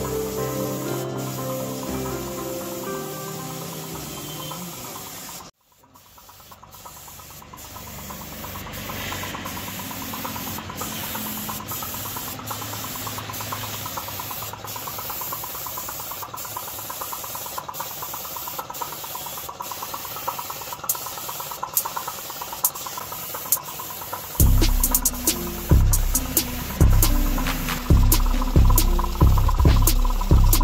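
Background music that cuts out about five seconds in, followed by the steady hiss of a compressed-air paint spray gun with a low hum beneath it; music with a heavy beat comes back in near the end.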